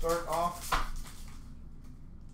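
A short voice sound lasting about half a second, then a single sharp tap as trading cards are handled, over low steady room noise.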